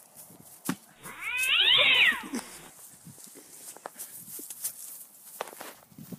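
A cat's drawn-out yowl, rising and then falling in pitch over about a second and a half. Scattered faint clicks and rustles come before and after it.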